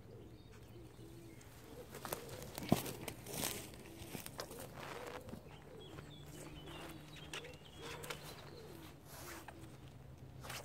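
Footsteps in wellies on grass and rustling, knocking handling noises as a landing net holding a fish is carried over and set down on an unhooking mat, with birds calling in the background.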